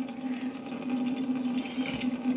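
Water running from a lab sink tap in a thin stream, over a steady low hum. Near the end a brief hiss as a jet of water hits the reactor vessel.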